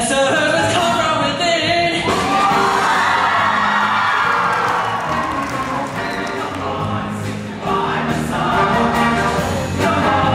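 A show choir singing in full voice, holding sustained chords, over a live band.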